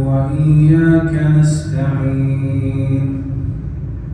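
An imam reciting the Quran aloud in a slow, melodic chant while leading congregational prayer: two long drawn-out phrases with held notes, the second tailing off near the end.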